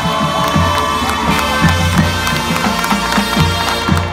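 High school marching band playing: brass holding notes over a steady drum beat, with a crowd cheering along.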